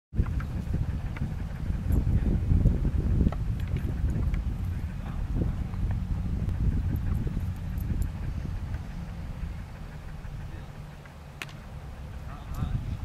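Low, uneven rumble on the camera microphone, loudest in the first few seconds and easing off near the end, with a few faint ticks.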